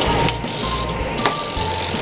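Splash Out toy ball's timer being wound by twisting its top: a few plastic ratcheting clicks, over background music.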